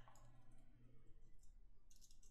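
Near silence with a few faint clicks from computer keyboard keys.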